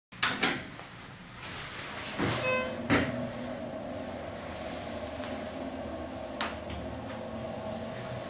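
Schindler hydraulic elevator: a couple of clicks as a car button is pressed, then a short chime and a thud as the doors close about three seconds in. After that comes a steady hum with a low rumble as the hydraulic car travels.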